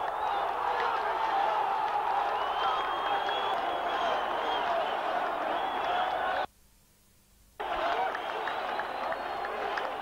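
Large stadium football crowd cheering and shouting after a goal, with many voices overlapping and some clapping. The sound cuts out abruptly for about a second just past the middle, then the crowd noise comes straight back.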